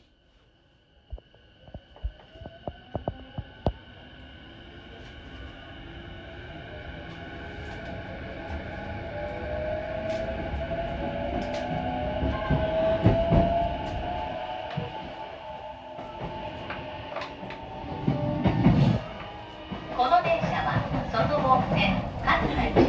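E233 series 5000-subseries electric train heard from inside the car as it pulls away and gathers speed. The inverter and traction motors whine, the pitch rising slowly with speed, over sharp clicks from the wheels at the start. The running noise grows steadily louder, with a loud rumble near the end.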